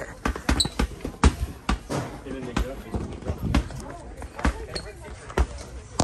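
Inflatable rubber playground balls bouncing and smacking on a hard shop floor and being thrown, about ten irregular sharp slaps.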